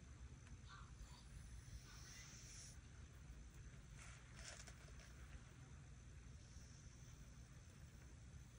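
Near silence: room tone with a few faint, soft strokes of a watercolour brush in the paint pan and on paper.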